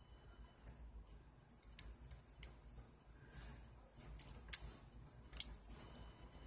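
A few scattered clicks from the number wheels of a three-wheel combination lock on a metal lockbox as they are turned by finger, with a feeler strip pressed in beside them to find each wheel's flat spot.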